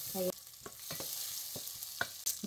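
Tomato wedges sizzling in hot bacon fat in a saucepan, with a steady hiss and a few light clicks of a wooden spoon against the pot as they are stirred. A brief sound of a voice near the start.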